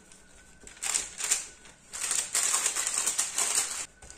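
Baking paper crackling and rustling under a hand pressing bread dough flat, in irregular crackly rustles that start about a second in.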